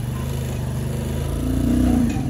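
Motorcycle engine running, growing louder in the second half as the revs rise.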